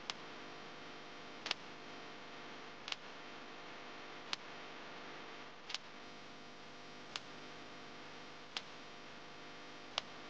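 Short sharp ticks, evenly spaced about every one and a half seconds, over a faint steady hiss: a ticking effect laid over a time lapse.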